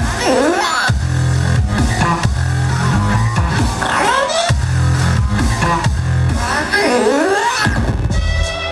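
Loud music for a cheerleading routine: heavy bass that cuts in and out, with swooping sounds that rise and fall several times.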